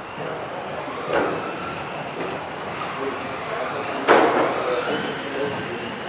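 Radio-controlled model cars running on a hall track, their motors whining in tones that glide up and down, with a sharp knock about a second in and a louder bang about four seconds in.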